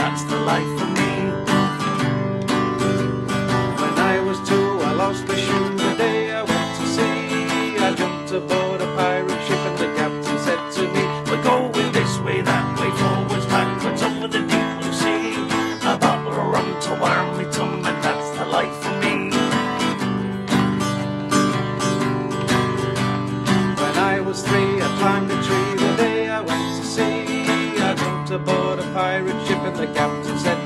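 Acoustic guitar strummed in a steady rhythm, accompanying a man singing a counting sea shanty.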